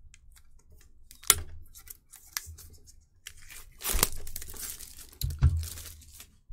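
Plastic packaging being torn and crinkled by hand while unpacking a Pokémon card tin. There is a sharp click about a second in, and the louder stretch of tearing comes in the second half.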